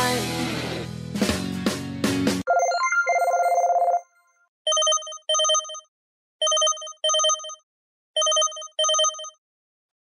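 LG KS360 mobile phone ringtones playing in turn. A rock-style music ringtone cuts off suddenly, a short buzzing electronic trill follows, and then comes a telephone-style ring: three double rings, each pair of short bright tones about half a second apart.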